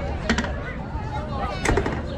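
Voices of a group of people talking outdoors over a low rumble, with two brief clusters of sharp clicks or knocks: one about a third of a second in, the louder one near the end.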